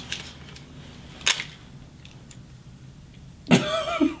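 A few small clicks and taps as makeup items are handled, the loudest about a second in, over a quiet room. A short laugh comes near the end.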